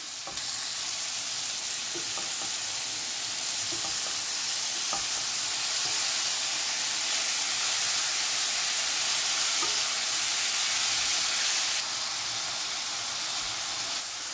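Diced pork loin sizzling steadily in a frying pan over maximum heat, with a few faint taps of a silicone spatula as the meat is stirred. The sizzle eases slightly near the end.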